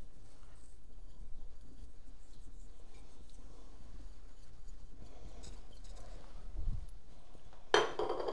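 A steady low background hum with only faint handling sounds. A louder, noisy rush of sound starts suddenly just before the end.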